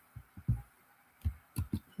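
About half a dozen soft, low thumps at uneven intervals over two seconds, with near quiet between them.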